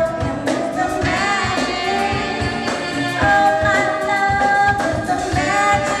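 A live soul band playing: sung vocals and saxophones over electric guitar, with a steady drum beat of about three strikes a second.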